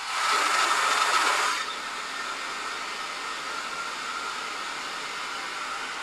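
Hair dryer blowing steadily to dry wet acrylic paint. It is louder for the first second and a half, then settles to an even, lower level.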